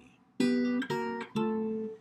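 Archtop jazz guitar playing three octave shapes with a third added inside, each struck and left to ring, the last one about a second long.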